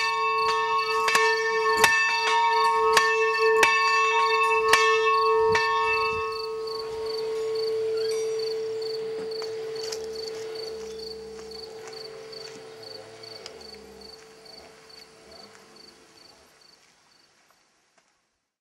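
Church bell rung in quick, even strokes, roughly two a second, for about the first five seconds. The ringing then dies away slowly and fades to silence just before the end.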